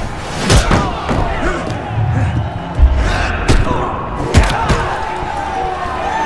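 Fight-film punch and kick impact effects: several sharp hits, the loudest a little under 3 seconds in, over a dramatic music score.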